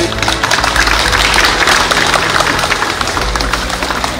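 Background music with a spell of applause, a dense patter of clapping hands over it.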